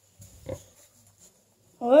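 A single short pig call about half a second in, low and brief, against otherwise quiet straw-pen surroundings.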